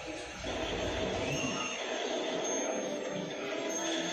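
A film's soundtrack playing from a TV's small speakers: a steady rushing noise that comes in about half a second in.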